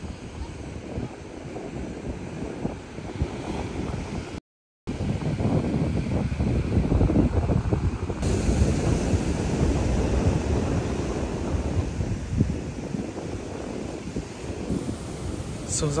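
Ocean surf washing onto the beach, with wind buffeting the microphone; the sound cuts out briefly a little over four seconds in.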